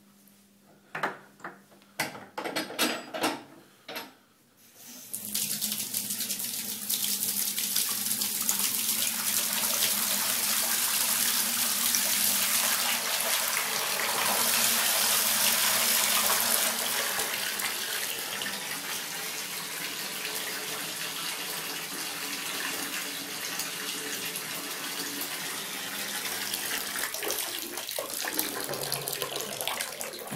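A few sharp knocks and clicks, then from about five seconds in a bathtub tap runs hard into a tub already full of water, a steady rush and splash that eases slightly after the middle.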